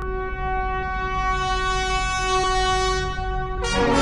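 Orchestral brass holding a long, steady horn-like chord over a low rumble, then a louder, brighter full-orchestra chord enters about three and a half seconds in.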